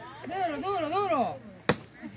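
A wooden stick whacks a piñata once with a sharp crack near the end, after a stretch of children's voices calling out.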